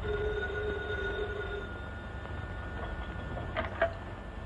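An old electromechanical telephone bell ringing in one steady ring that fades after about two seconds, then clicks as the receiver is lifted off its hook near the end.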